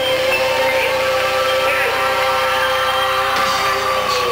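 Male singer holding one long, steady note into a handheld microphone over a sustained backing chord; the note slides down and drops off right at the end.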